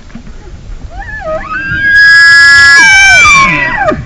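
Bull elk bugling: one loud call that climbs from a low note into a long, high whistle, holds it, then drops away near the end.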